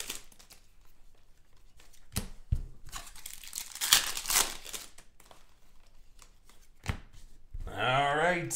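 A Panini Prizm basketball card retail pack being torn open by hand, its wrapper tearing and crinkling in a few short bursts, with a sharp click near the end.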